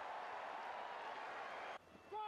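Stadium crowd cheering after a rugby try, a steady roar that cuts off abruptly near the end.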